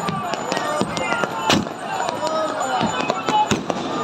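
Fireworks and firecrackers bursting in repeated sharp cracks, the loudest about a second and a half in, over the voices of a crowd.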